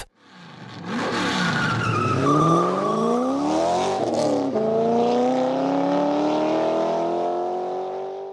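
A motor vehicle engine revving. Its pitch sweeps down and up over the first few seconds, then climbs slowly and steadily.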